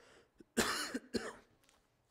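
A man coughing into his fist: two short coughs, about half a second apart.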